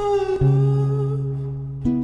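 Slow, soft music: a held, hummed-sounding vocal over plucked guitar, with new notes coming in about half a second in and again near the end.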